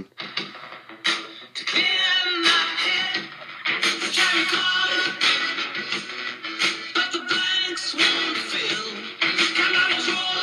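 A song with a steady beat played through the small built-in speakers of a WowWee Robosapien RS Media robot, fed in over its auxiliary input.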